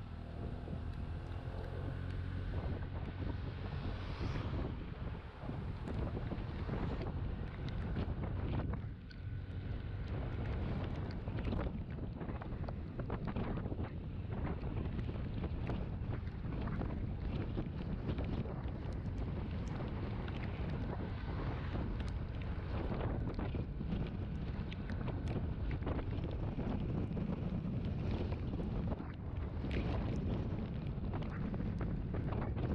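A scooter riding along at road speed, its engine running under heavy wind buffeting on the microphone, with many short gusts.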